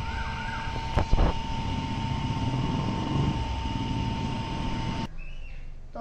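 Outdoor street and traffic noise, a steady low rumble with a continuous high-pitched tone running through it. A sharp thump about a second in is the loudest sound. The sound cuts off suddenly about a second before the end.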